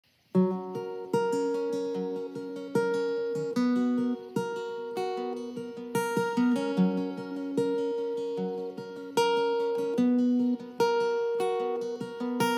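Steel-string acoustic guitar with a capo, fingerpicked: a melodic intro of plucked single notes and chords left ringing. It starts about half a second in.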